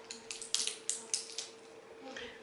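Glossy paper booklet being handled and its pages turned, a quick run of short, crisp paper crackles in the first second and a half.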